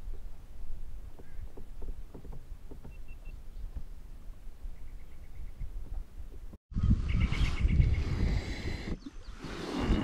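Wind rumbling on the microphone with a few faint bird chirps. About two-thirds of the way in, the sound cuts and comes back much louder, with heavier wind and water noise and a rapid run of high ticks.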